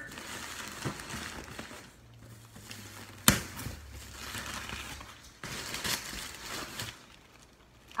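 Packaging rustling and crinkling in irregular bursts as a shipping box is rummaged through, with one sharp knock about three seconds in.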